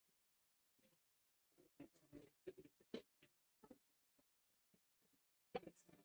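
Faint clatter of pool balls on a break shot: a quick run of sharp clicks as the cue ball smashes into the racked reds and yellows and they scatter. A couple more clicks come near the end as balls knock together.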